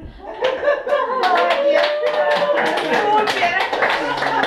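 A small group of people applauding by hand, with voices over the clapping. The clapping starts about a second in and carries on dense and irregular.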